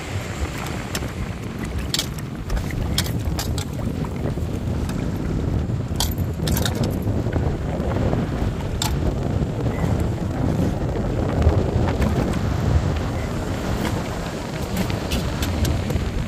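Water splashing and sloshing as hands wash pieces of parrot fish in an aluminium pot, with scattered sharp clicks and splashes. A steady low rumble of wind on the microphone runs underneath and is the loudest part.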